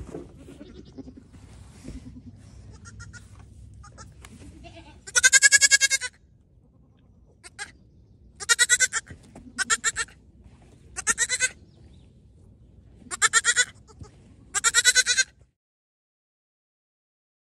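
Goats bleating: six loud, wavering calls spaced a second or two apart, the first and longest about five seconds in, after a stretch of faint background noise.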